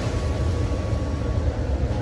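Shredded cabbage sliding out of a plastic tub into a giant wok, heard as a soft rushing noise over a steady low rumble.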